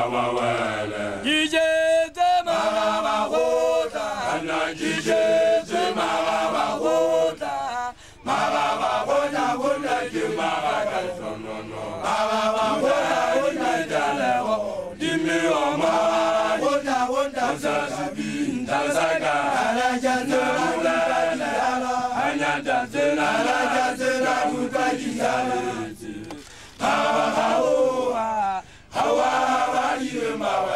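A group of Basotho initiates chanting together in Sesotho without instruments, many voices in unison phrases broken by brief pauses.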